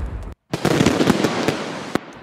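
A produced transition sound effect of blasts and dense crackling bangs. It cuts out for an instant about a third of a second in, then comes back loud and trails off near the end.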